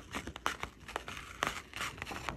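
Clear plastic carrier sheet of an iron-on (heat-transfer) vinyl letter crinkling and crackling as a hand rubs it and peels it back from the fabric, a run of sharp irregular crackles.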